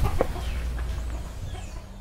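A chicken clucking a few short times over a steady low rumble, with the sound fading out near the end.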